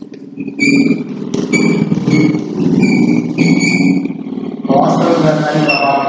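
Chalk squeaking against a blackboard in five or six short writing strokes, each a brief high squeal, over a steady low rumble.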